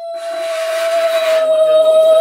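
Conch shell (shankha) blown in one long, steady note with a breathy hiss, growing louder.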